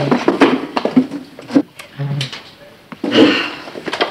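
Knocks and clatter of people getting up from a set dinner table and moving away, with short bits of voice among them.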